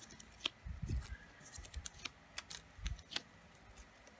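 Small paper sticky notes being peeled off a planner page and handled: scattered light paper rustles and clicks with a few soft taps on the page.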